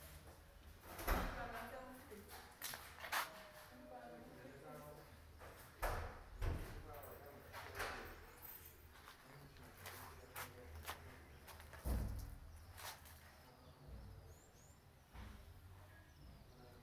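Irregular soft knocks and thuds, about one every second or two, like footsteps and handling of a phone camera, over faint background voices.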